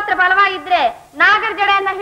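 Speech only: a high-pitched voice talking quickly in film dialogue.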